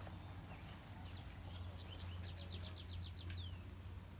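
A bird singing: a few scattered chirps, then a quick run of about ten short notes in about a second, ending in one falling note. Under it runs a steady low hum.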